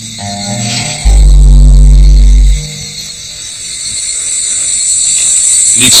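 Documentary music with a deep, loud bass note in the first half. A high, steady rainforest insect drone then swells up and grows loud toward the end.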